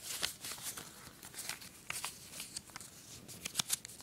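Small paper instruction leaflet being folded up by hand: faint rustling and crinkling with a scatter of soft crackles, a few sharper ones near the end.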